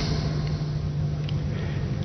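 Steady low engine drone over an even hiss: the background sound of a vehicle following the bicycle race.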